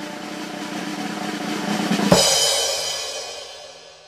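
Drum-roll sound effect that swells for about two seconds and ends in a cymbal crash, which rings and fades away: a reveal sting as the draw result comes up.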